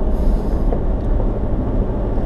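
Vehicle engine and tyres on a gravel mountain road heard from inside the cabin, a steady low rumble as the vehicle climbs a steep grade.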